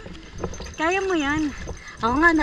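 A person's voice: one drawn-out, wavering vocal sound about a second in, not a clear word, over a steady low rumble of water and wind at sea.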